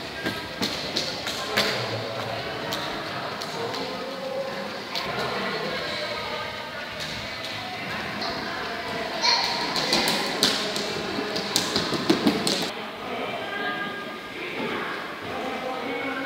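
Indistinct voices talking in the background, with a cluster of sharp knocks and taps from about nine to twelve seconds in.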